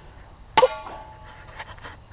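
A single machete chop into a small pine sapling about half a second in: a sharp hit followed by a brief metallic ring from the blade.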